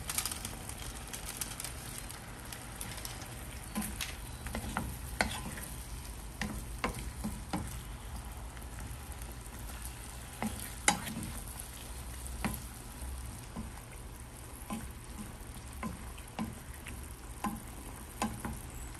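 Wooden spoon stirring chicken and potatoes in coconut milk in a ceramic-coated frying pan, with a soft simmering sizzle under it and scattered light taps and scrapes of the spoon against the pan. One sharper tap comes about eleven seconds in.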